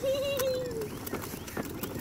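A baby's long drawn-out 'ahh', held high and steady, then sliding down and fading out about a second in. A few faint clicks follow.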